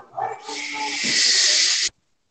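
A loud, steady hiss lasting about a second and a half, starting about half a second in and cutting off suddenly near the end, after a short burst of noise at the very start.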